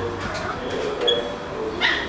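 Guinea pig giving two short high-pitched squeaks, one about a second in and one near the end, while held down by the head.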